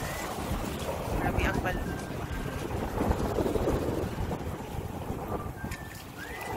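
Wind blowing across a phone's microphone: a steady, unbroken rush.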